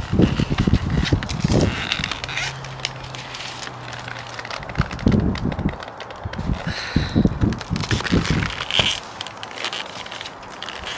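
Thin plastic plant nursery pot being handled, flexed and knocked while a rootbound plant is worked loose, giving irregular crackles and clicks, with low rumbling gusts of wind on the microphone.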